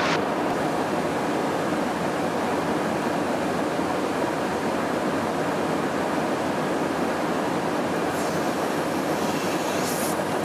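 Steady, even rushing noise of a KC-135R Stratotanker in flight, heard inside the aircraft.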